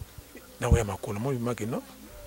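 A man's voice making short murmured sounds with no clear words, starting about half a second in and stopping just before the end, with one low thump under the first sound.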